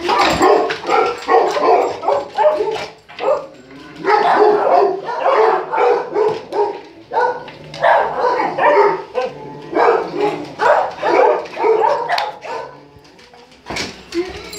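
Dog barking over and over, in runs of quick barks with short pauses between.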